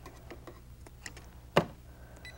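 Scissors snipping the thread behind a sewing machine's presser foot: a few faint small ticks of handling, then one sharp snip about one and a half seconds in.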